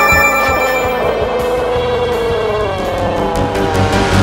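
A man's long drawn-out cry, held for several seconds and sliding slowly down in pitch, over background music with a pulsing bass.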